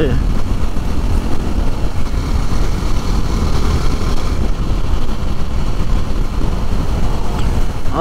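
Steady rush of wind on the microphone over a motorcycle engine running at an even cruising speed, heard from the rider's seat of a KTM RC sport bike.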